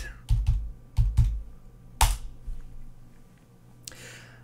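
Computer keyboard keystrokes: a quick run of key clicks in the first second or so, then one louder single keystroke about two seconds in, and a last faint click near the end.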